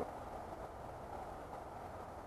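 Quiet, steady outdoor background noise: a faint, even hiss and low rumble, with no distinct event.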